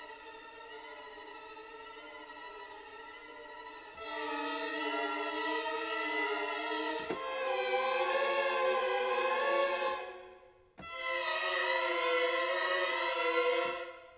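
ProjectSAM Pandora 'Strings: Ghostly Bending' sampled string ensemble holding sustained chords whose pitches slowly waver and bend. A quiet chord is joined by louder ones about four and seven seconds in. The sound fades out near ten seconds, and another chord starts just under a second later.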